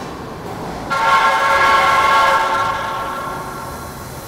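Subway train pulling into the station. A loud, steady, multi-note tone starts suddenly about a second in and fades away over the last second as the train comes to a stop.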